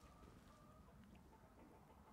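Near silence: faint background room tone.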